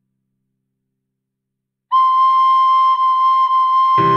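About two seconds of silence during a rest, then a recorder sounds one high note, repeated three times at the same pitch with barely a break between them.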